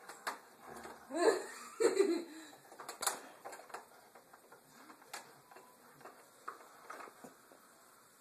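Two short, soft laughs about one and two seconds in, each falling in pitch, followed by faint scattered clicks and taps.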